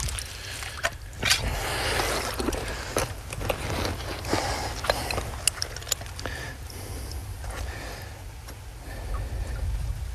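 Shallow creek water sloshing and splashing around a wader-clad trapper's legs as he works at the bank, with many scattered sharp clicks and knocks from handling the trap stake, cable and tools.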